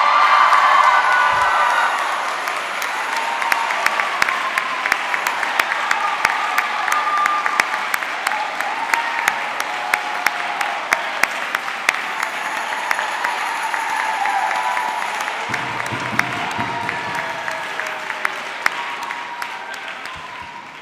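Congregation applauding, many hands clapping at once. The applause is loudest at the very start and slowly tapers off near the end.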